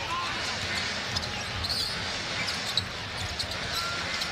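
Arena crowd noise with a basketball being dribbled on the hardwood court during live play, and a few short sharp knocks.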